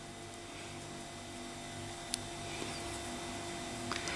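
Faint handling sounds of metal knitting needles working yarn, a yarn over and two stitches knitted together, with one light click of the needles about two seconds in. A steady low electrical hum runs underneath.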